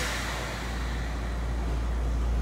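A burst of compressed-air hiss inside a stationary former Tokyu 8500 series electric train car, fading away over about a second, over the car's steady low hum just before departure.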